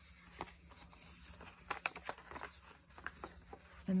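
Paper crinkling and rustling as a folded paper pocket is unfolded by hand, with several light, sharp paper clicks scattered through.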